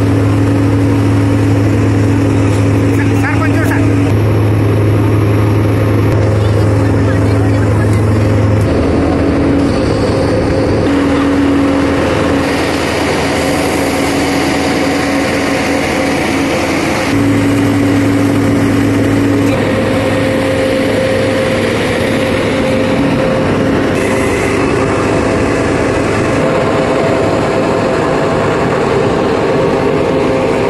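A dredging vessel's engine running steadily: a deep hum with a higher drone above it. The deep hum drops back about nine seconds in and comes back strongly around seventeen seconds.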